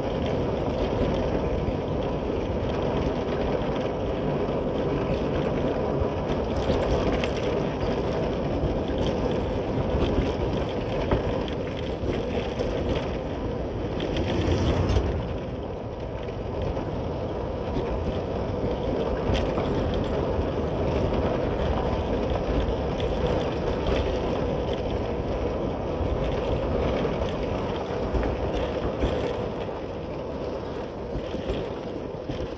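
Motorcycle running steadily while being ridden over a rough dirt road, engine and road noise blended together. A brief louder swell comes about halfway through, then it runs slightly quieter.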